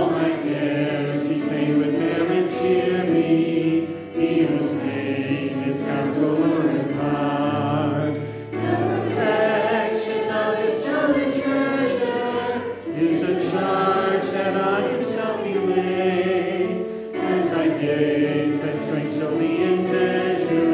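A group of voices singing a hymn together, in held phrases of about four seconds each with short breaks between them.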